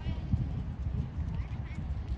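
Wind buffeting a phone's microphone: an uneven low rumble that rises and falls in gusts.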